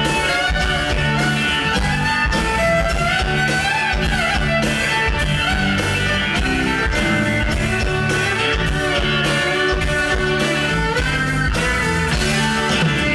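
Electric folk-rock band playing live: a fiddle carries the melody with sliding notes over mandolin, electric bass guitar and a steady drum beat.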